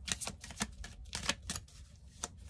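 A deck of oracle cards being shuffled by hand: an irregular run of sharp card clicks and slaps, several a second.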